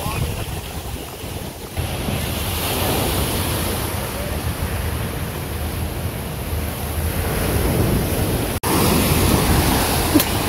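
Steady rushing noise of wind buffeting the microphone, over water pouring out of water-slide outlets into the splash pool.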